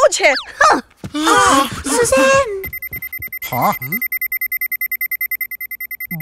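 Electronic alert signal beeping: a high, rapidly pulsing tone, about eight pulses a second, starting about halfway through, signalling an incoming call that summons the team.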